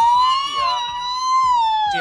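A woman wailing in one long, high-pitched crying howl that wavers slightly and drops in pitch near the end.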